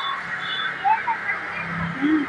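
Roadside background noise: a steady hiss with a few faint, short, higher sounds, and the low hum of an approaching vehicle engine building near the end.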